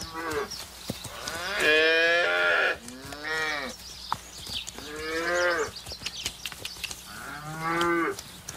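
Cattle mooing: about five drawn-out calls in a row, the longest around a second.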